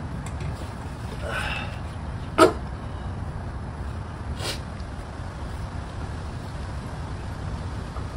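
Parts of a disassembled golf cart electric motor being handled: a sharp knock about two and a half seconds in and a fainter one about four and a half seconds in, over a steady low rumble.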